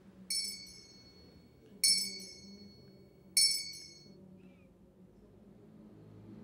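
Altar bell rung three times, about a second and a half apart. Each ring is a bright, clear chime that fades over about a second. The bell marks the elevation of the chalice at the consecration.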